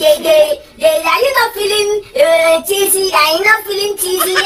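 A high, child-like voice singing a short tune in held notes with brief breaks, words such as "aren't you feeling...".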